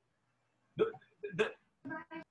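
Speech only: after a short silence, a voice haltingly repeats "the, the, the" in three short syllables.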